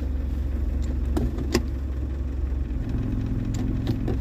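Land Rover engine idling steadily, heard from inside the cabin, with a few sharp clicks as the automatic gearbox selector lever is worked with the brake held. The engine note changes slightly about three seconds in.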